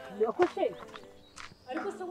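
A person's voice in two short spoken bursts with a pause between.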